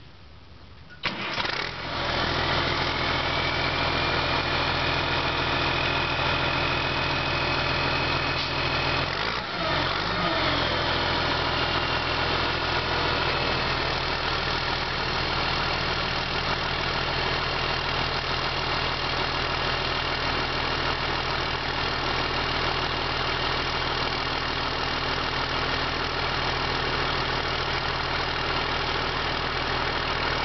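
Case W20C wheel loader's diesel engine cranks and starts about a second in, then runs steadily with a high whine that rises and levels off. Around nine seconds in the engine note briefly changes, and a new high whine settles in as the loader's hydraulics are worked to raise the bucket, cycling the hydraulic fluid during startup.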